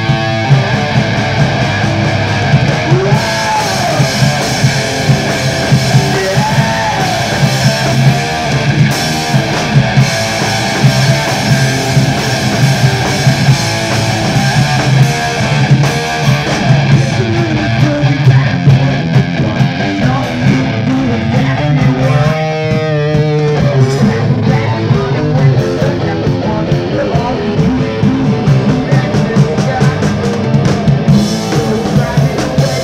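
Live punk/thrash band playing loud and fast, with distorted electric guitar, electric bass and drum kit all the way through. There is a brief fast rippling passage about two-thirds of the way in.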